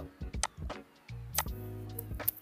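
A few sharp clicks, typical of a computer mouse being worked, over a steady droning tone with several pitches that comes in about halfway through.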